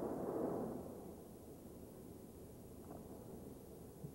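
Gusting hurricane wind and heavy rain: a loud rush of wind in the first second, then a softer, steady noise of wind and rain.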